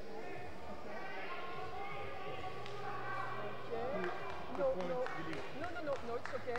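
Indistinct voices talking in a large indoor sports hall, with a few short, sharp knocks near the end.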